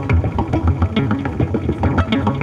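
Modular synthesizer playing a busy electronic pattern: pulsing low bass under fast, even clicking percussive hits.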